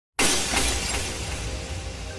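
Glass-shattering sound effect for an intro title: a sudden loud crash with a deep boom, starting a moment in and fading steadily, as music comes in beneath it.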